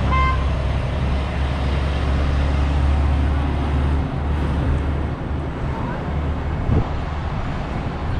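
Heavy truck and trailer driving past close by, a deep, steady engine and tyre rumble that is loudest for the first four seconds and then eases into lighter traffic noise.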